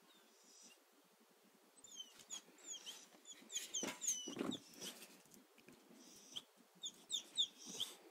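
A small songbird chirping in short, quick notes, starting about two seconds in and going on to the end, with a few knocks and scrapes near the middle.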